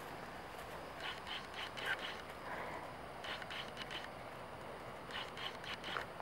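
Footsteps on a dirt path strewn with dry leaves: faint crunching in short clusters roughly every two seconds.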